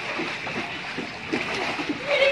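Water splashing and sloshing as children thrash about in a shallow inflatable paddling pool.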